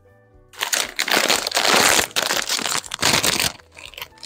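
Plastic crisp packet crinkling loudly as it is pulled open and handled, starting about half a second in and dying down near the end.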